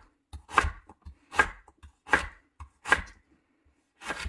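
A chef's knife chopping through firm purple radish onto a wooden cutting board: four crisp cuts, each ending in a knock on the board, about one every 0.8 seconds.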